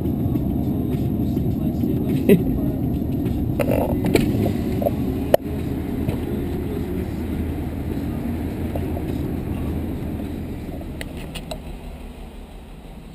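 Steady low road and engine rumble inside a car rolling slowly at low speed, with a sharp click about five seconds in; the rumble fades away near the end.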